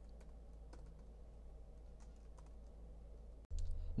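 Faint keystrokes on a computer keyboard, a few scattered taps, over a low steady hum.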